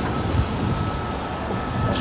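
City street background noise: a steady low rumble of passing traffic.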